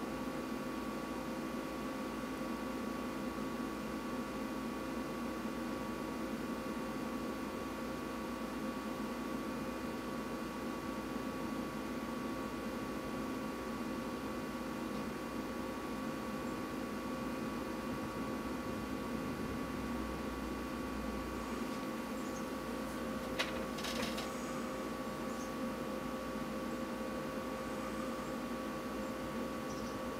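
Steady background hum and hiss with a few steady tones, broken by a single sharp click about 23 seconds in.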